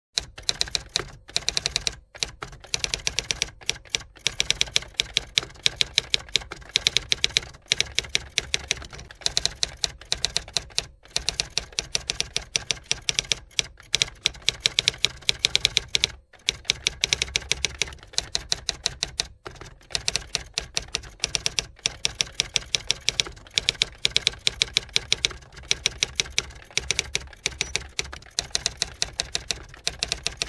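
Typewriter-style typing sound effect: rapid key clicks, several a second, in runs broken by brief pauses.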